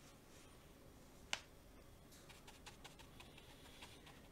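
Near silence with one sharp click about a second in and a few faint ticks after it, as a paintbrush works in the wells of a metal watercolour palette.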